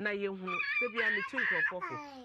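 A toddler crying out, a high wavering wail starting about half a second in and lasting just over a second, over an adult's speech.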